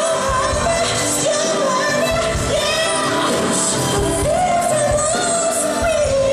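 Male R&B lead vocalist singing live into a handheld microphone, with a live band and keyboard backing him.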